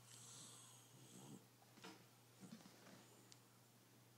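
Near silence, with a pet's faint breathing: a soft breathy hiss over the first second or so, then a few soft clicks.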